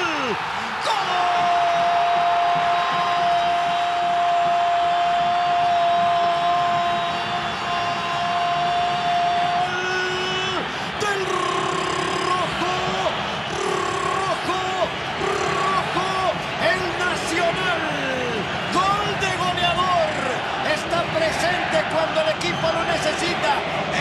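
A football commentator's long, drawn-out goal shout, held on one steady note for about nine seconds. It is followed by shorter shouted calls that rise and fall, celebrating an equalising goal.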